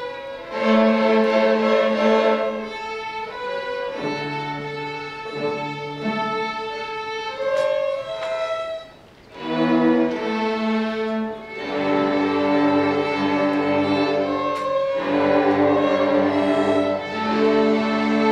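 School string orchestra of violins and cellos playing slow, sustained bowed chords. About halfway through the music briefly falls almost silent, then the ensemble comes back in fuller and louder.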